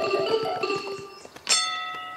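Cartoon sound effects: apples dropping to the ground in a patter of small thuds and hooves trotting, under a light musical cue. About a second and a half in, a bell-like ding rings out and fades.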